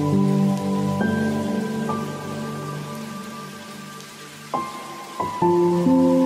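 Slow, soft music of held chords laid over a steady rain hiss. New chords come in about a second in and near two seconds, the music fades through the middle, and fresh chords return near the end.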